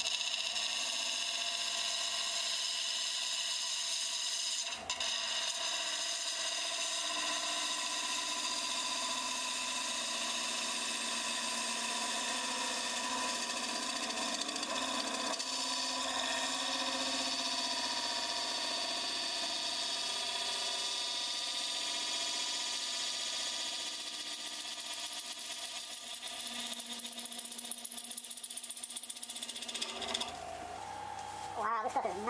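A gouge cutting the inside of a spinning segmented redwood and figured maple bowl on a wood lathe: a steady hiss of the cut over the lathe's hum. It breaks off briefly about five seconds in and eases a little near the end.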